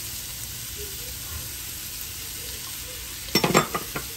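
Diced celery and carrots sizzling steadily in butter and oil in an enamelled pot, a soft, even frying hiss. Near the end, a quick run of sharp clinks as a small glass prep bowl is set down.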